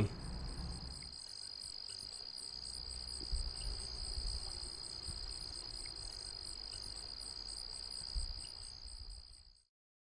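Insects singing in a steady, unbroken high trill, with a faster pulsing buzz above it and a low wind rumble on the microphone; the sound cuts off suddenly about nine and a half seconds in.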